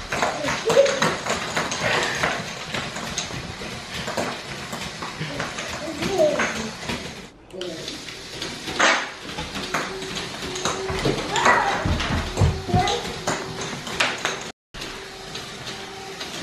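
Small children's voices and squeals over scattered light clicks and clatter of plastic Lego parts and baby-food caps on a hardwood floor, with a faint steady hum in the last few seconds.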